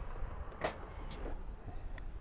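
Exterior door switch of a Kia Granbird Silkroad coach pressed, setting off the passenger door mechanism: two short sounds about half a second apart over a low background rumble, as the door is about to open.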